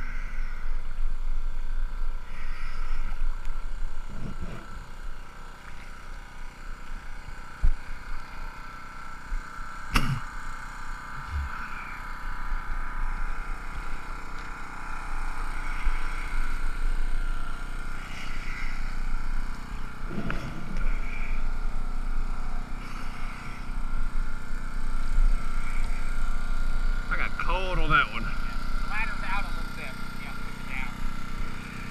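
Indistinct voices from people on the boats over a steady hum and low rumbling water and wind noise at the waterline, with a single sharp knock about ten seconds in.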